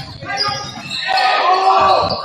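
Basketball dribbled on a hardwood gym floor, a run of short bounces echoing in the large hall. A loud voice calls out over it in the second half.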